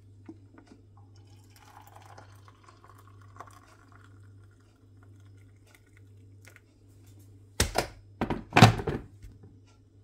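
Hot water poured into a double-walled glass mug over a tea bag and milk, a faint filling sound. Near the end come a few loud knocks.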